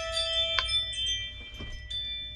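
Electronic chime tones from an Omnitracs in-cab logging tablet: a few overlapping held notes, some starting in the first half second, fading out over the second.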